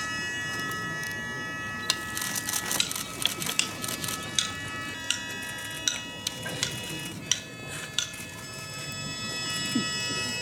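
Wooden hagoita paddles knocking a shuttlecock back and forth in a hanetsuki game: about ten sharp, irregularly spaced knocks. Under them are sustained held chords of Japanese shrine music that change a few times.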